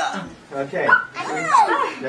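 Children's high voices yipping and barking like dogs, with a falling whine about one and a half seconds in.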